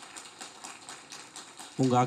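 A string of light, irregular clicks, several a second, with a man's voice at a microphone starting loudly near the end.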